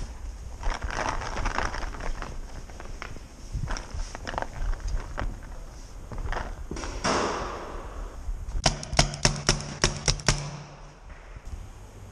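A paintball marker fires a rapid burst of about nine sharp shots in a second and a half near the end, with a steady low hum under them. Before the burst there are scattered knocks and scuffs of movement.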